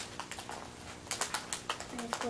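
Small foil blind-bag wrapper crinkling and tearing as it is pulled open by hand, with a rapid run of sharp crackles about a second in.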